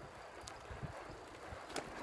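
Loaded touring bicycle rolling on asphalt, heard through a camera mounted on its frame: irregular low knocks and a couple of sharp clicks from the bike and mount over a steady rush of tyre and wind noise.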